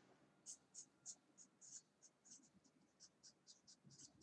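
Red felt-tip marker writing on a paper card: faint, short high scratchy strokes, about four a second, as letters are drawn.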